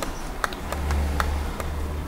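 A handful of sharp, irregularly spaced clicks from a computer mouse, with a low hum swelling in the middle.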